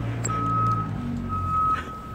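A single high electronic beep repeating about once a second, each beep about half a second long, over a low steady hum.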